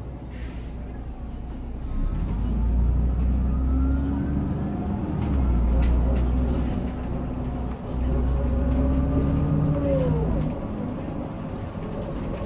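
Hyundai New Super Aerocity low-floor city bus heard from inside at the rear door, its engine and drivetrain pulling the bus away and accelerating. The rumble swells about two seconds in and builds in three surges with brief breaks between them, a whine rising in pitch through each. It eases off near the end.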